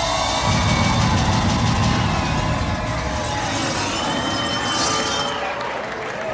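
Stage CO2 cryo jets blasting with a loud, continuous hiss, over dance music and a crowd.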